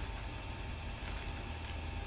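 Quiet room tone with a steady low hum, and a faint rustle of a paper instruction booklet being handled about halfway through.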